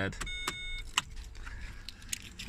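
A Vauxhall Vectra that will not start: its key in the ignition gives about half a second of quick clicks with a thin high beeping, then a single sharp click about a second in, and no cranking. The car is dead, which the owner puts down to a failed alternator.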